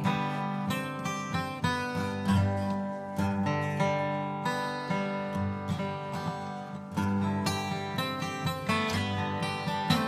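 Acoustic guitars playing the instrumental opening of a folk song live, picked notes ringing out over steady bass notes.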